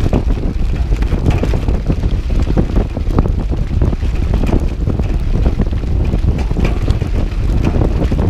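Wind buffeting a GoPro Hero 5 Session's microphone as a cross-country mountain bike is ridden, with a steady low rumble and constant rapid clicks and rattles from the tyres and bike over the dirt trail.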